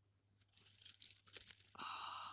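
Quiet rustling and a few small clicks of a hedgehog being handled on dry leaves, then near the end a louder breathy hiss.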